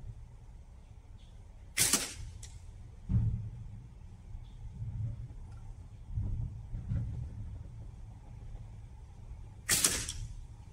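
Two slingshot shots about eight seconds apart, each a sharp snap as the bands are released. The first is followed about half a second later by a faint tick, the shot hitting the small 40 mm metal spinner.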